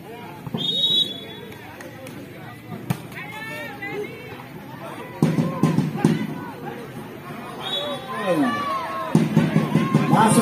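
Short, steady, high referee's whistle blasts, one about a second in and another near eight seconds, over crowd voices and shouts from spectators around the court.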